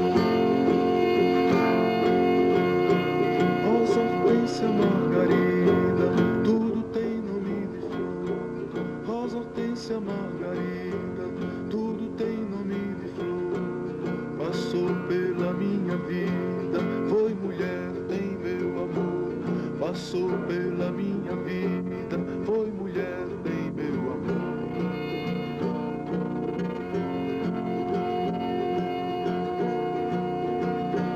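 Acoustic guitar played with a small band, a double bass among them, in an instrumental passage without singing. Plucked and strummed guitar notes sound over long held notes, and the music is louder for the first six seconds.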